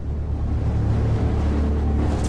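Cinematic intro sound effect: a loud, steady deep rumbling drone with a hiss over it, swelling slightly at the start.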